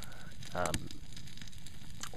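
Open fire crackling under a pot of solid lard, a steady hiss with a few faint pops.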